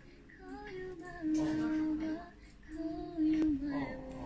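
A high voice singing a slow tune unaccompanied, holding long notes, the longest lasting about a second.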